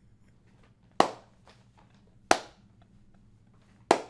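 Three sharp hand claps, slow and spaced roughly a second and a half apart.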